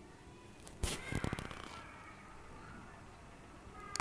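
A quick cluster of faint clicks and knocks about a second in, typical of a metal spoon tapping and scraping a nonstick frying pan as hot oil is scooped over frying chicken.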